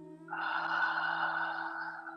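A person's long audible breath, lasting nearly two seconds, taken while holding downward dog, over soft ambient music of steady held tones.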